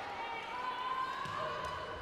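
Volleyball court sounds in a gym: the ball being served and struck, with faint sneaker squeaks on the hardwood floor and a low murmur from the hall.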